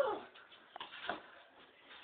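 A pet animal giving two short cries that fall in pitch, one at the start and one about a second later.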